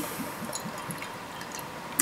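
Imperial stout poured from a glass bottle into a tilted stemmed glass, glugging steadily as it pours: "a lovely glug".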